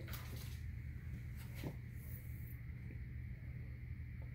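Quiet room with a steady low hum and a few faint soft clicks as a sublimated ruler and its transfer paper are handled on a tabletop.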